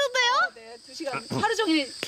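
A steady, high insect chorus, with a woman's brief vocal exclamations near the start and again near the end.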